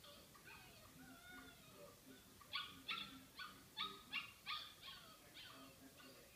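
Dog vocalizing thinly: soft rising and falling whines, then a quick run of about eight short, high yips lasting about three seconds.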